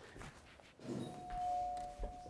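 Doorbell ringing: a two-note ding-dong chime, a higher note then a lower one, starting about a second in and ringing on together.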